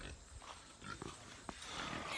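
Pigs grunting faintly, with one soft click about one and a half seconds in.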